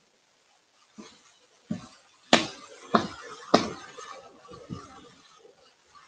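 A stamp being pressed and tapped down onto a wooden board: about six knocks over four seconds, the three loudest close together in the middle.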